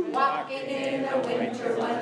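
Voices singing together, a woman's voice on the microphone prominent, with held notes.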